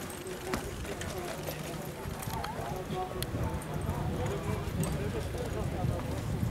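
Hoofbeats of a single driving horse pulling a marathon carriage through an obstacle, with onlookers' voices in the background.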